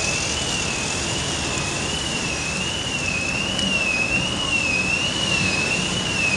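Steady road traffic noise from passing cars, with a thin high tone wavering slightly up and down, about one and a half times a second, running underneath.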